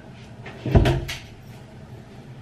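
A single heavy thump with a short clatter of clicks, about a second in.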